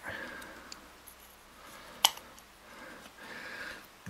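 Quiet handling of a baitcasting reel's removed side plate and frame, faint rubs and taps of the metal parts with one sharp click about two seconds in.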